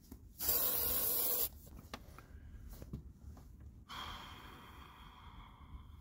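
Aerosol spray can giving one steady hiss about a second long that cuts off sharply.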